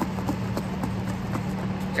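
Salad being shaken inside a closed foam clamshell container: a run of irregular light knocks and rattles, over a steady low hum.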